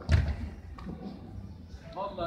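A single dull thump just after the start, then low hall ambience with faint distant voices.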